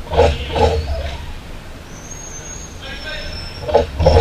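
Brief shouts from players in a large indoor arena hall, a pair of calls near the start and another just before the end, over a steady low hum.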